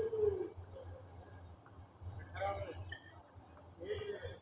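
Short vocal calls from badminton players during play, three brief shouts spread across the moment, in a large echoing indoor hall.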